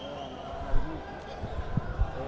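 Dull thuds from a boxing exchange in the ring: one loud thud about a third of the way in, then a few smaller ones near the end, over a murmur of crowd voices.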